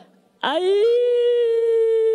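A woman's impundu, the Rwandan acclamation cry sounded only by women: one long high call that starts about half a second in, rises quickly and is held on a steady pitch.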